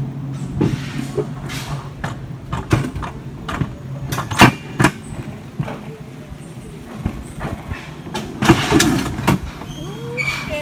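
Mountain coaster sled running down its steel rails, rattling with irregular sharp clacks and knocks, the loudest about four and a half seconds in and a cluster near the end.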